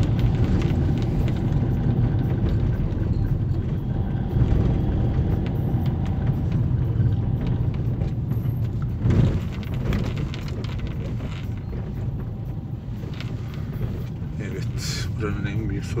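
Steady low rumble of a car's engine and tyres, heard from inside the cabin while driving slowly over a stone-paved street, with a brief louder thump about nine seconds in.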